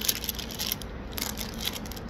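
Faint rustling and scattered light clicks of a phone being handled, with clothing brushing close to the microphone.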